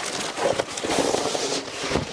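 Clear plastic bag crinkling and rustling as a tripod wrapped in it is slid out of its carry case: a dense crackle that grows livelier about half a second in.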